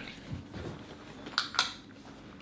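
Switch clicks as the lights are turned off: a few faint clicks, then a sharper pair of clicks in quick succession about a second and a half in.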